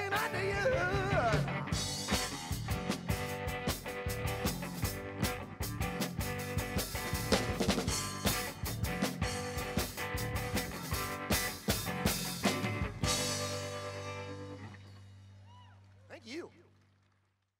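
Live rock-and-roll band playing electric guitar over a busy drum kit. About thirteen seconds in the drums stop, leaving a final held chord that rings and fades away.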